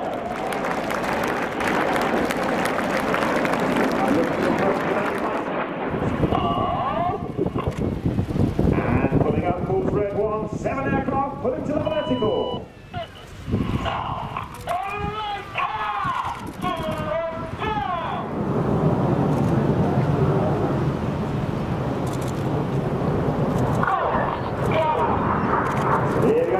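Rushing jet noise from BAE Hawk T1 trainers' turbofan engines passing overhead. From about six seconds in to about eighteen seconds a man's voice takes over, the loudspeaker commentary, and then the jet noise returns, with the voice coming back near the end.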